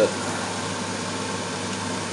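Water boiling in a frying pan and saucepan full of CDs and DVDs on an electric hob: a steady hiss with a faint low hum.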